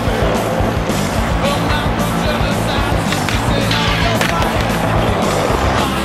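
Skateboard wheels rolling on concrete, with a few sharp clacks of the board in the middle, under loud music.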